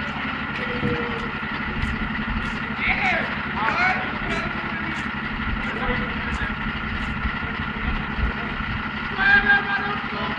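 Diesel engine of a MAN TLF 20/40 fire engine running as the truck moves slowly off, with voices calling out over it about three seconds in.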